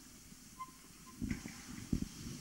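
Quiet room with a faint short beep about half a second in, then two soft low thumps, the second near the end the louder: a microphone being handled and knocked against its stand.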